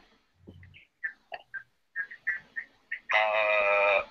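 Phone speakerphone audio picked up through a video call: faint broken electronic chirps, then about three seconds in a loud, steady buzzing tone lasting about a second. The speakerphone link is not carrying the caller's voice.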